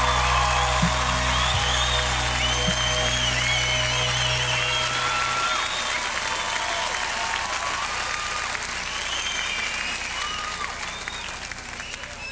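Concert audience applauding with high whistles. A held low note from the band rings under it and stops about five seconds in. The applause eases off toward the end.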